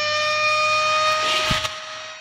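A loud, steady siren-like tone whose pitch rises slowly, breaking off with a sharp click about one and a half seconds in.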